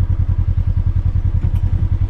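Polaris RZR 900 side-by-side's twin-cylinder engine running at low speed with a steady, rapid throb.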